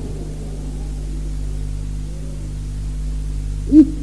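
Steady low electrical hum with faint hiss from an old tape recording, in a pause in a man's recitation; his voice comes back just before the end.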